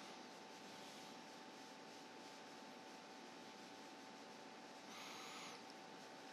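Near silence: steady hiss with one faint constant tone, and a brief faint rustle about five seconds in.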